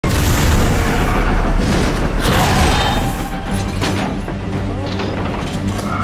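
Film sound mix of a coal-fired steam engine running at speed: a loud rushing rumble with booms that eases about three seconds in, leaving a low steady drone under dramatic music with scattered metallic clanks.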